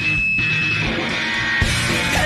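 Loud live rock band playing an instrumental passage with distorted electric guitar, bass and drums. A high note is held for about a second at the start.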